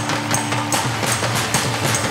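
Live stage band music, instrumental with a steady beat of drum hits; a held note drops out under a second in.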